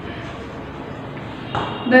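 Chalk writing on a blackboard, faint against the room's background noise. A woman's voice starts speaking near the end.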